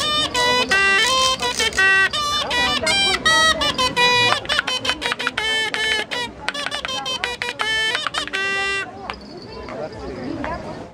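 Zhaleika, a folk reed hornpipe, playing a lively melody in quick short notes; the tune stops about nine seconds in.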